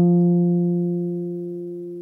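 Archtop electric guitar: a single note at the end of an F pentatonic scale pattern, left to ring and slowly fading away.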